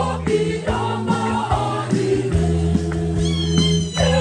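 Church choir singing an Advent hymn live, several voices in held chords over steady low tones. Near the end a high voice slides upward.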